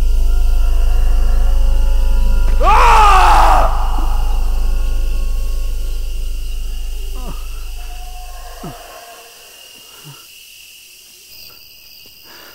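Suspense film score: a deep steady drone with a loud sweeping swell about three seconds in, then fading away by about nine seconds. A few short falling cries follow over quiet night ambience.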